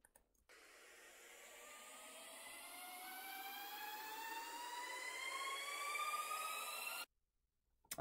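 Electronic build-up riser: a hiss with several tones gliding steadily upward, growing louder for about six seconds, then cutting off suddenly about seven seconds in. It is high-passed, with no low end, as the track is thinned out before the drop.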